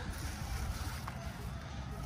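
Quiet outdoor background: a low, uneven rumble like light wind on the microphone, with faint hiss and no distinct event.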